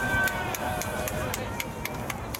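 Distant, indistinct shouting voices across a baseball ground, with a few sharp clicks scattered through.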